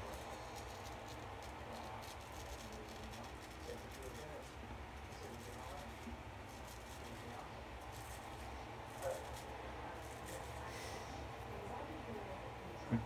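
Diamond Edge square-point straight razor scraping through lathered whiskers on the upper lip in a run of faint, short strokes.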